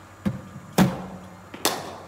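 Three sharp knocks with a short echo: a cricket ball fed by a bowling machine and struck by a bat on a front-foot shot, the loudest knock a little under a second in.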